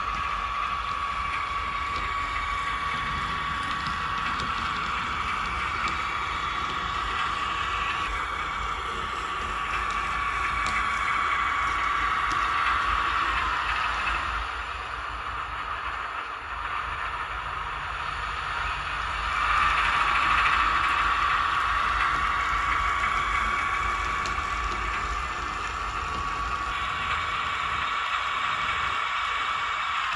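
Sound decoder of an H0 model of the MÁV M28 'Mazsola' diesel shunter, playing diesel engine sound through the model's small speaker as it runs along the track, with a steady high whine. The sound swells twice, about 12 and 20 seconds in.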